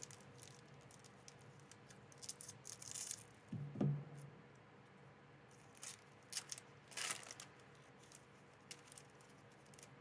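Foil booster pack wrapper crinkling and tearing as it is opened by hand, in a few short faint spells of rustling, followed by the cards being handled.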